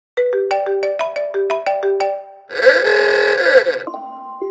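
An iPhone alarm tone plays: a quick, even run of bright electronic notes, about six a second. About two and a half seconds in it gives way to a loud, harsh, noisy blast lasting over a second. A new steady alarm tone comes in just before the end.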